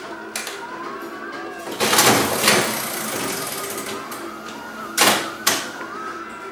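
Antique Mills 25-cent mechanical slot machine being played: a loud mechanical whirr about two seconds in as the handle is pulled and the reels spin, then sharp clunks about five seconds in as the reels stop.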